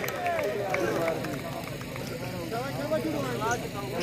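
Several men's voices talking and calling over one another, quieter than the loudspeaker commentary around them.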